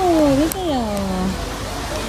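A person's voice making two drawn-out, wordless sounds, each falling in pitch, with a faint click between them.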